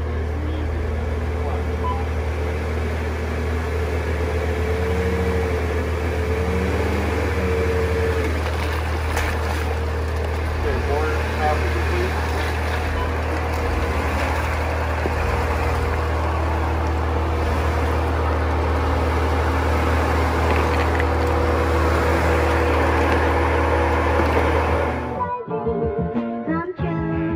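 Jeep Wrangler JL's engine running steadily with a low hum. Music cuts in abruptly near the end.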